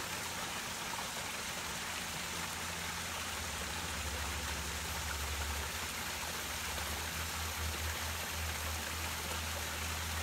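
Running water at a koi pond, a steady trickling rush, with a low hum underneath that grows stronger from about four seconds in.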